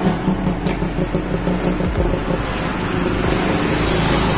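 Road traffic: motor vehicles running on a city street, a loud, even rushing noise over a steady low hum.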